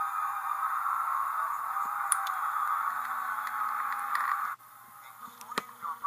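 A long, nasal, honk-like sound from recorded TV game-show audio, played back through a camcorder's small speaker. It cuts off suddenly about four and a half seconds in.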